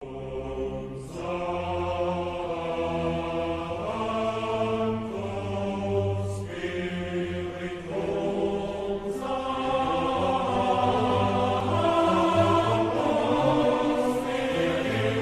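Choral music: voices singing long held notes in slow phrases, with a short break between phrases every two to three seconds. It starts suddenly out of silence.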